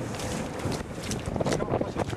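Wind rumbling on the microphone, with scattered short clicks over it.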